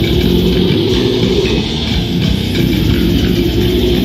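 Live heavy metal band playing loud and dense: distorted electric guitar, bass guitar and fast drums, with the vocalist growling into the microphone.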